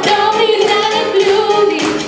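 A boy's high voice singing through a microphone and PA, holding long notes over band accompaniment.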